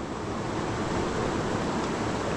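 Steady rushing of a small, fast-flowing river.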